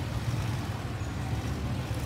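Steady low rumble of motor vehicles on the street.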